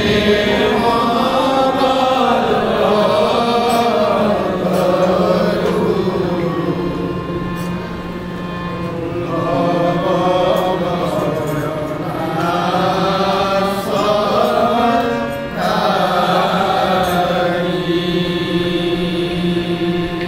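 Devotional kirtan: a group of men chanting together in long sung phrases over a sustained harmonium, with strokes on a hand-played barrel drum. The singing eases off briefly twice, about eight seconds in and again near the middle of the second half.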